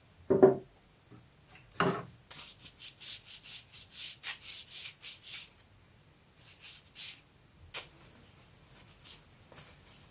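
A paper napkin dampened with alcohol is rubbed over a soldered glass panel in quick wiping strokes, about three a second, cleaning off leftover acid soldering flux. Two thumps come first and are the loudest sounds, and there is a sharp click near the eight-second mark.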